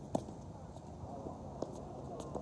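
Tennis rally on a hard court: a sharp pop of a racket hitting the ball just after the start, then fainter pops of the ball bouncing and being hit back from the far end.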